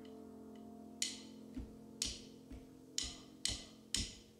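A drummer counting the band in: sharp ticks on an even beat, a louder one about once a second with softer ones between them, over a faint steady hum.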